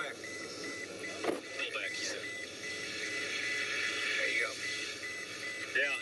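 Car warning chime beeping rapidly and evenly at one high pitch, about five beeps a second, over steady car and wind noise with faint broadcast voices.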